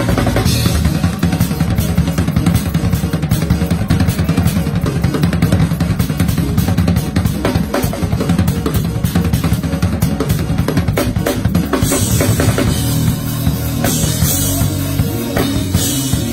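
Acoustic drum kit played hard and fast in gospel praise-break style: dense, rapid fills on snare and toms driven by the bass drum. Near the end the fills give way to cymbal crashes and wash, over a steady low accompaniment.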